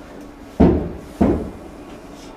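Two loud, dull thumps about two-thirds of a second apart, each dying away quickly.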